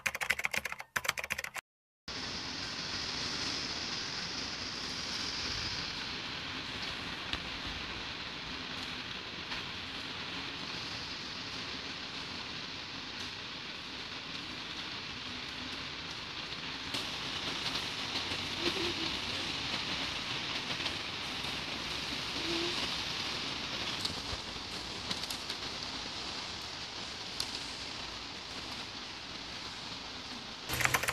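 Typhoon rain falling steadily in a continuous even hiss, starting about two seconds in after a brief burst of title-card sound.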